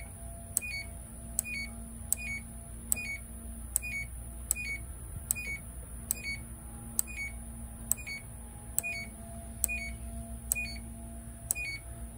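Control panel of a GE front-load washer/dryer combo beeping once as its cycle-selector dial clicks onto each setting. The dial is turned steadily, so there are short, even beeps, each with a click, about one every 0.8 seconds.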